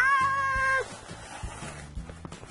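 A high-pitched squealing cry from a person's voice. It rises sharply, is held for under a second, then gives way to a quieter stretch with a few small clicks.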